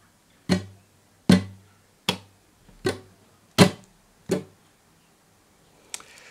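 Nylon-string flamenco guitar struck with right-hand strums, six evenly spaced strokes about three quarters of a second apart, each dying away quickly. The strokes demonstrate the étouffé, the muted stroke of the rumba strumming pattern.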